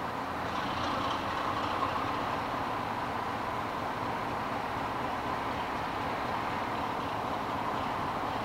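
BR Class 33 diesel locomotive running as it approaches slowly: a steady engine drone with a thin, steady high whine over it, growing slightly louder after about a second.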